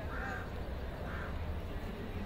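A bird calling twice, about a second apart, over a steady low rumble.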